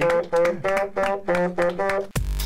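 Bassoon playing a quick run of about eight short, detached notes, roughly four a second.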